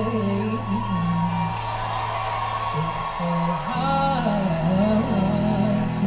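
A man singing a slow ballad into a handheld microphone, with long held notes that waver and bend, over a steady sustained musical backing, heard through a television's speakers.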